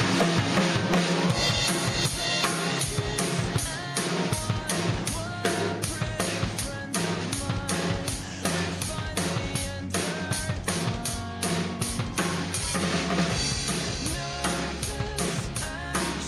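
Drum kit entering suddenly at full volume and playing a steady rock beat on kick, snare and cymbals over a full-band song recording.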